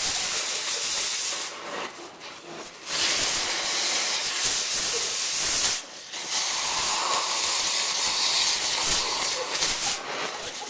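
Oxy-acetylene torch hissing loudly as its flame melts through a hard drive's metal case and throws sparks. The hiss drops away for about a second and a half, starting a second and a half in, and again briefly about six seconds in.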